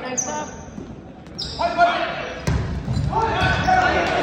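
Indoor volleyball play in a gym: two short high sneaker squeaks on the hardwood floor early on, then players shouting calls. A sharp ball hit comes about two and a half seconds in, all echoing in the large hall.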